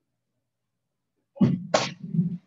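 A kick striking a handheld paddle target with a sharp slap near the end, next to a short, explosive shout and a thud of the student's feet landing.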